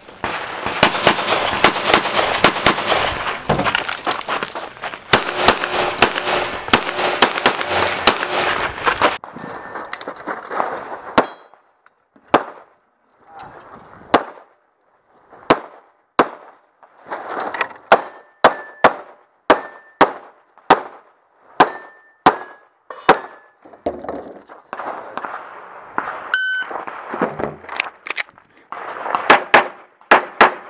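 Semi-automatic pistol fired rapidly, shots coming in quick pairs and short strings with brief pauses between. For about the first nine seconds the shots run close together under a constant noise. After that each report stands out sharply, with silent gaps between strings.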